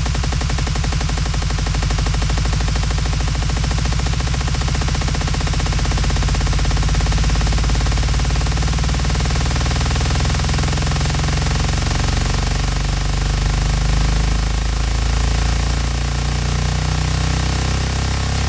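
Electronic dance music whose distorted bass pulses in a fast, even stutter, loud and unbroken throughout.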